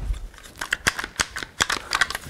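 One-handed quick-action bar clamp being handled and adjusted: a run of about a dozen sharp, irregular clicks as its sliding jaw and trigger mechanism are worked.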